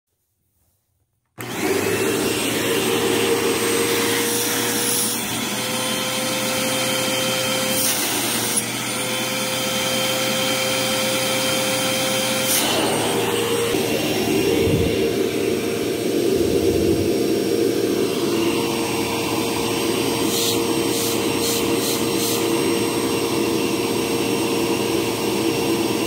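Eureka Lightspeed upright vacuum cleaner motor running steadily, a constant whine over rushing air, starting just over a second in. Its pitch shifts slightly a couple of times as the hose airflow changes during an airflow test.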